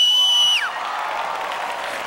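A shrill, held whistle that ends with a falling slide about half a second in, followed by a crowd cheering and shouting.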